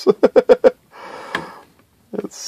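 A man laughs briefly in a quick run of pulses, then a soft rustling scrape with a single click follows, about where a 3D-printed plastic part is being set into its base.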